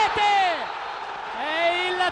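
A male TV commentator shouting excitedly at a goal in two long, drawn-out calls that rise and fall in pitch, with crowd noise beneath.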